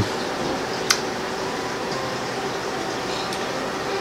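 Steady room hiss, like a fan or air conditioner running, with one short sharp click about a second in and a fainter tick later.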